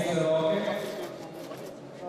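A man's voice talking, trailing off within the first second, then a quieter stretch of background room noise.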